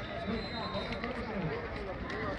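Faint, distant voices of people calling and talking over steady outdoor background noise.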